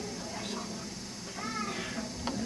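A brief, faint, high-pitched voice sound over quiet room noise, about a second and a half in.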